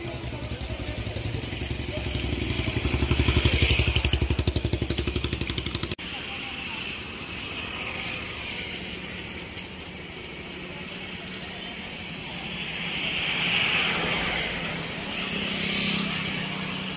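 A motorcycle engine runs close by, growing louder to a peak about three to four seconds in and then cut off abruptly at about six seconds. Fainter road-traffic sounds follow, with a vehicle swelling past near the end.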